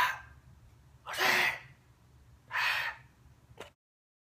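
A man's loud, breathy stage whisper: three short whispered bursts about a second and a half apart. The sound then cuts off to silence near the end.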